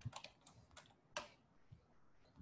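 Faint computer keyboard keystrokes as a command is typed into a terminal, a few separate key clicks with one sharper key press a little over a second in.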